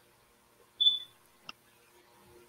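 Video-call audio cut out to dead silence while the connection freezes, broken only by one short high chirp about a second in and a faint click shortly after.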